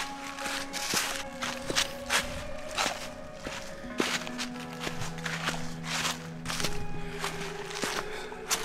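Footsteps crunching through dry fallen leaves, about one and a half steps a second, under background music with long held notes.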